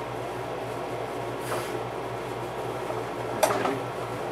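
Steady low room hum, with a single sharp click near the end as the glass display cabinet is handled.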